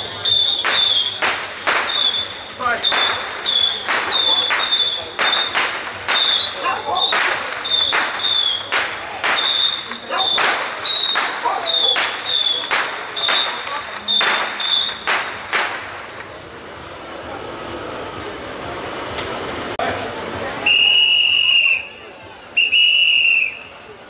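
Metal percussion struck in a steady beat, about two strikes a second, each with a high ringing tone, for roughly fifteen seconds. After a quieter stretch come two long whistle blasts near the end.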